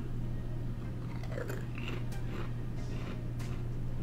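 A person chewing a mouthful of Pringles crisps, with a few short, irregular crunches over a steady low background hum.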